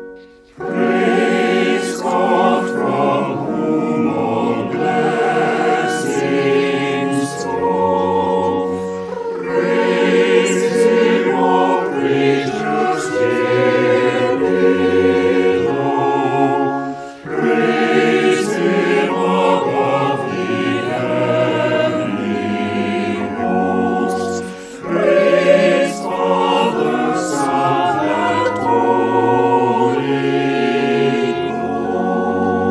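A choir singing, in long phrases with brief breaths about 17 and 25 seconds in.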